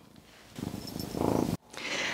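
A pet purring close to the microphone, growing louder, then cut off abruptly about one and a half seconds in. A short breath follows near the end.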